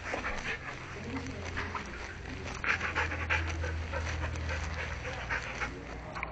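A dog panting quickly and rhythmically, very close to the microphone of a camera worn on the dog, after a run.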